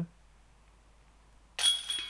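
A disc golf putt hitting the chains of a metal basket about one and a half seconds in: a sudden metallic jingle with a ringing that fades. It is the sound of a made putt, holing a birdie. Before it there is only faint room tone.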